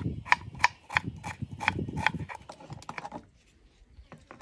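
Kitchen knife chopping an onion on a wooden cutting board: a steady run of sharp taps, about three a second, that stops about three seconds in.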